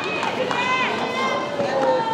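Spectators shouting and calling out in a large hall, several voices overlapping and echoing over a general crowd murmur.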